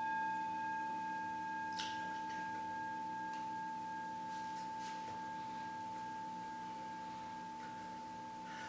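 A singing bowl ringing out after a single strike: one steady high tone with fainter overtones above it, slowly fading away. A few faint clicks and rustles sound over it.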